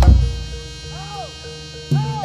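Live Javanese barong-dance music: a loud struck hit right at the start, then a held, buzzy note that fades down, with two short pitch slides rising and falling around the middle.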